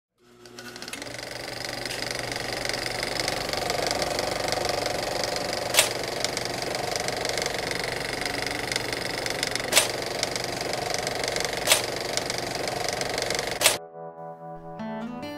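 A steady, rapid mechanical clatter that fades in at the start, with four loud sharp clicks a few seconds apart, and cuts off suddenly near the end.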